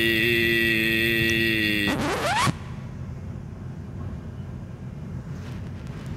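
Music with long held chords plays and ends about two seconds in with a rising sweep. A steady, quieter rumble follows: the running noise of a train heard from inside the passenger carriage.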